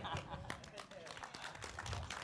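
Light, scattered applause from a theatre audience, a dense patter of faint claps with some murmuring voices.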